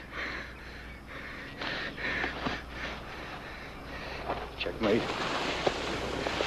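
A man's laboured breathing in ragged swells, with a brief mumbled word near the end.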